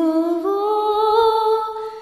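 Unaccompanied female voice holding one long sung note with no words, stepping up slightly in pitch about half a second in and fading near the end.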